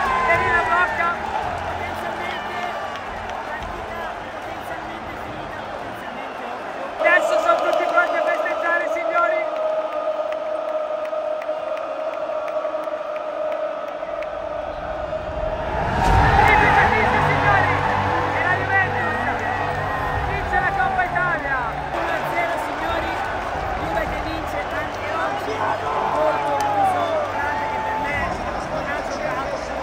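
Large football-stadium crowd cheering and singing in celebration at the final whistle. The sound changes abruptly twice, about seven and about sixteen seconds in.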